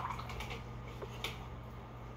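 A few faint light taps and clicks from painting supplies being handled on a tabletop, over a steady low hum.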